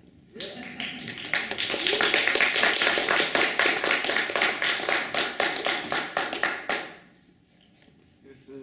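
Audience applauding, a dense spatter of claps that builds quickly and dies away about seven seconds in, with a few voices mixed in near the start.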